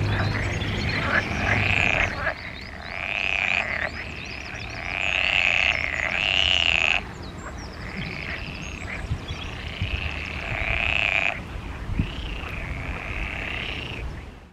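European water frog (groene kikker) croaking with both white vocal sacs puffed out at the sides of its head: loud calls in about five bouts of two to four seconds each, with short pauses between.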